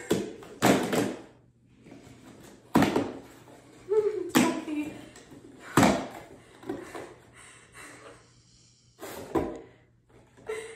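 Cardboard shipping box being torn open and handled: about five short, sharp rips and knocks of cardboard, spaced a second or two apart.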